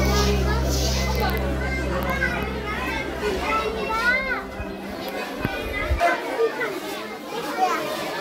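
Children's voices chattering and calling out, several at once, with a steady low hum underneath that cuts off suddenly about six seconds in.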